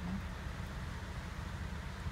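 Steady hiss of heavy rain on a vehicle's roof and windows, heard from inside the cabin over the low hum of the air conditioning.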